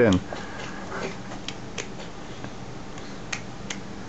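A few faint clicks and crinkles of a soft plastic konnyaku jelly cup being squeezed and sucked at by a toddler, over a low steady hum.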